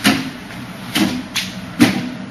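Arms and hands striking the wooden arms of a Wing Chun wooden dummy: sharp wooden knocks, one at the start, another about a second in, a lighter one just after, and a loud one near the end.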